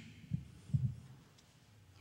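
A pause in speech: two soft, low thumps within the first second, then quiet room tone.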